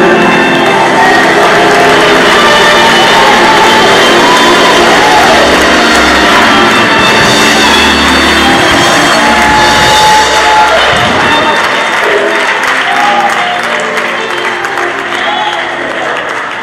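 Live gospel music: a male singer on a microphone with organ and piano accompaniment. The music ends about eleven seconds in and gives way to the congregation's applause and cheering.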